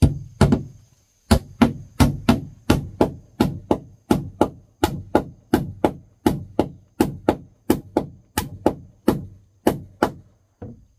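Claw hammer driving a nail into a wooden deck board: two quick strikes, a short pause, then a steady run of about three blows a second for some eight seconds, each a sharp knock.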